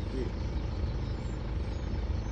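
A vehicle engine idling with a steady low rumble.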